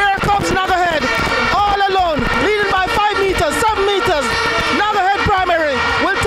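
Loud, excited voices shouting without a break, the pitch high and rising and falling quickly.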